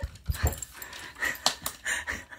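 A cat right up against the phone's microphone, breathing and brushing its fur on it, with a few short knocks and clicks.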